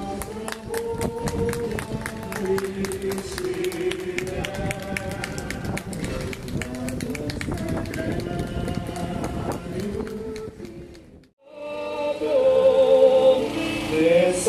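Devotional hymn singing with musical accompaniment, with a run of sharp clicks through the first half. It breaks off briefly about eleven seconds in, then resumes louder.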